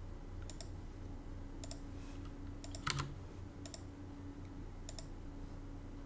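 Computer mouse clicking while copying records and switching browser tabs: sharp press-and-release clicks about once a second, one a little louder near the middle. A faint steady low hum sits under them.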